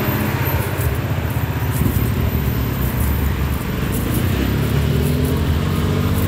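Road traffic: the engines of slow-moving cars running close by, a steady low rumble.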